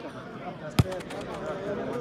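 A football being kicked: one sharp, loud thud about a second in, over voices of players and onlookers.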